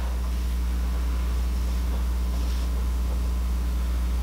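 Steady low hum with a faint even hiss: the background noise of the recording, with no other clear sound.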